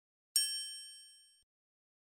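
A single bright ding, a chime-like tone struck about a third of a second in that rings out and fades away within about a second: the sound effect of an animated logo reveal.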